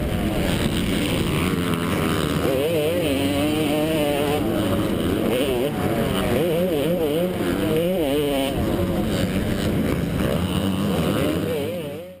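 Yamaha YZ250 two-stroke single-cylinder engine running hard under race load, its pitch swinging up and down over and over as the throttle is worked, heard close up from the rider's helmet camera. The sound fades out at the very end.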